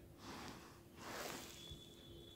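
Two faint breaths into the microphone, a short one and then a longer one, over a low steady hum.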